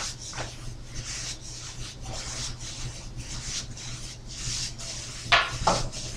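Two paintbrushes stroking thick bronze plaster paint onto the rough, porous outside of a clawfoot tub: a run of soft scratchy brushing strokes, with one sharper stroke near the end.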